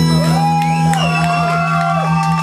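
Loud, chaotic live guitar music: a steady low droning note held throughout, under wailing high tones that slide up, hold and slide back down.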